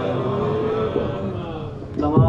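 Unaccompanied male voice chanting a long, drawn-out melodic phrase in held, gliding notes, fading shortly before the end.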